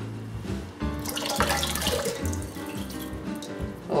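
Kitchen tap running while lentils are rinsed in a bowl under it, with background music and a steady bass line.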